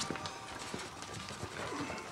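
Quiet background score of soft held notes, with a few faint light taps.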